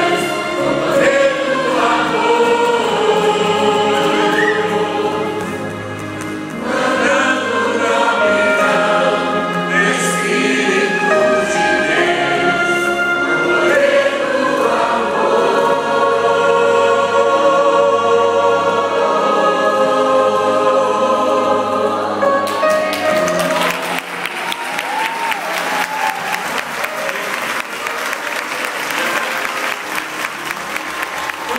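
Large mixed choir singing a gospel hymn, which ends about three quarters of the way through and gives way to applause and clapping.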